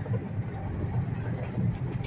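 Semi truck rolling along, heard from inside the cab: a steady low rumble of engine and road noise.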